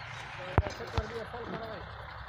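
Two sharp knocks about half a second apart, with faint men's voices in the background.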